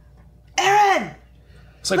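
A person clearing their throat once, a short voiced sound of about half a second that drops in pitch as it ends, before speech resumes near the end.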